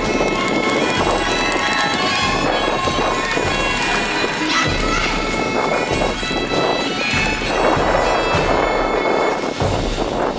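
Bagpipes playing a tune over a steady drone, loud and continuous, with outdoor noise underneath.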